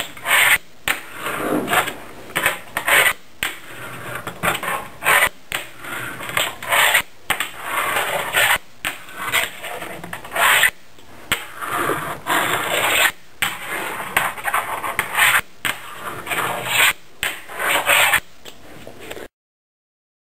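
A fingerboard being ridden across a desk top: its small wheels rolling and scraping on the surface, broken by many sharp clacks as the board strikes the desk. The sound cuts off abruptly just before the end.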